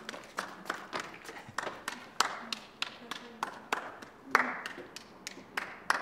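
Hands clapping at a steady pace, about three claps a second.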